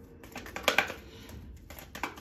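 A deck of tarot cards being shuffled by hand: a short run of crisp card clicks a little under a second in, then fainter ticks near the end.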